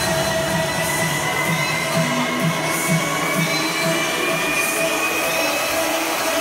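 Electronic dance music from a live DJ set, played loud through a concert sound system and heard from within the crowd. A thin synth tone rises slowly over a dense noisy wash and a pulsing beat, and the deepest bass drops out about two seconds in, as in a build-up.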